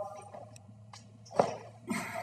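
Quiet gym room tone during an empty-bar box squat, with a faint click a little under a second in and one short, sharp burst of breath about a second and a half in.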